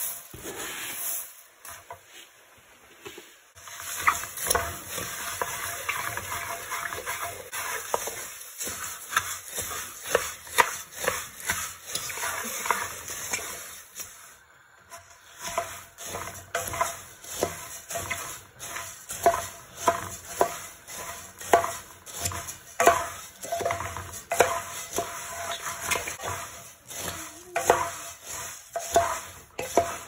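Puffed rice being stirred and tossed with a wooden spatula in a pot with a little oil: repeated crisp scraping, rustling strokes, about one a second in the second half, with two short pauses.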